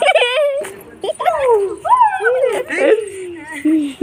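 A person's voice singing a wordless tune, in long notes that slide up and down in pitch, with a wavering note at the start.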